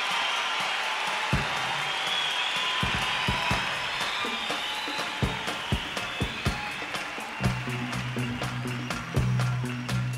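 Live concert crowd cheering and clapping. About seven and a half seconds in, a steady low bass note comes in under the crowd as the band starts the next song.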